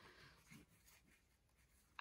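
Near silence, with a faint rustle of small kraft-paper envelopes being handled, mostly in the first moment.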